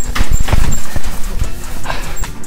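A quick run of dull thuds from gloved punches, kicks and stamping footwork on foam mats during sparring, about five sharp knocks in two seconds.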